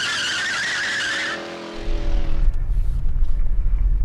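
A car tire-screech sound effect lasting about a second and a half, tailing off with a brief engine note. It gives way a little under two seconds in to the steady low rumble of road and wind noise inside a moving car.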